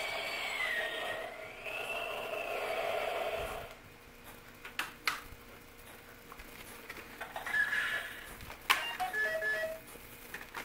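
Buzz Lightyear interactive toy helmet playing an electronic sound effect from its small speaker: a tone that dips and rises in pitch over a steady lower hum, lasting about three and a half seconds. Sharp plastic clicks follow, two about five seconds in and one louder near the end, with short electronic beeps toward the end.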